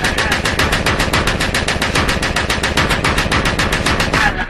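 Dark electro / EBM track playing: a dense, even run of hard percussive hits at about ten a second, like machine-gun fire, over a steady low bass layer.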